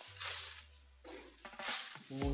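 Granulated sugar pouring from a plastic jar into a steel pan of water, heard as two short grainy rushes, one near the start and one near the end.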